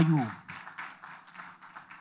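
Faint scattered clapping from an audience, following the tail end of a man's word through the microphone.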